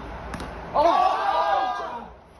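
A single sharp knock of a plastic cricket bat striking a ball, then several young men shouting together for about a second.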